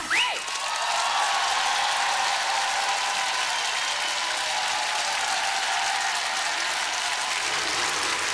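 Studio audience applauding steadily: dense, even clapping with no music under it.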